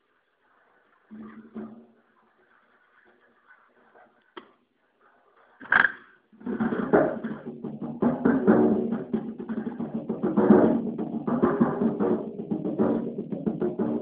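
Solo percussion on a drum kit: a few soft, sparse strokes, a sharp loud hit about six seconds in, then a dense, fast run of strokes on the drums that carries on to the end.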